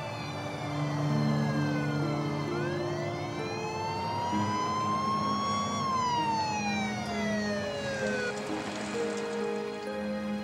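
Police car siren wailing: a slow sweep that falls, rises for about three seconds, then falls again, over background music with held notes. A rush of noise comes in near the end.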